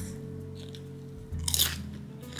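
A potato chip bitten with a loud crunch about one and a half seconds in, then chewed, over steady background music.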